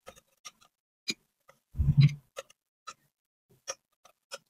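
Metal ladle clinking lightly against a cooking pot and a ceramic plate as braised pork ribs and quail eggs are dished out: a few scattered ticks, with a duller, louder thump about two seconds in.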